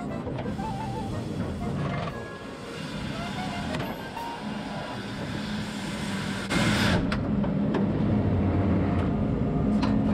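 Heavy recovery vehicle running under load as its cable pulls an overturned tractor-trailer cab upright, with a sudden loud burst of noise about six and a half seconds in and a louder steady low hum after it; music plays alongside.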